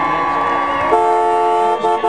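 A car horn sounds a long blast about a second in, then breaks into a quick run of short honks near the end.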